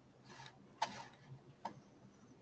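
A few faint, sharp clicks at a computer as the screen is being worked: a soft rustle first, the sharpest click a little under a second in and a smaller one over halfway through.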